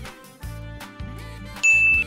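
Background music with a steady beat, then a single bright ding chime near the end, the cue for the quiz answer being revealed.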